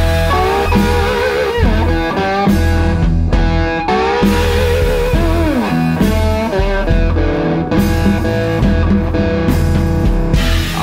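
Blues band playing an instrumental passage: an electric guitar lead with string bends and wide vibrato over a steady bass line and drums.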